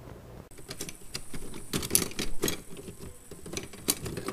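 Metal cutlery clinking and rattling in a kitchen drawer as a hand rummages through it. A busy, irregular run of clinks and knocks starts about half a second in.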